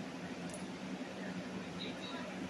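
Quiet room tone: a steady low hum with a faint click about half a second in.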